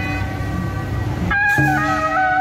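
Suona (Chinese shawm) playing a melody in held notes, with a short break about a second and a half in before the tune picks up again on a higher note.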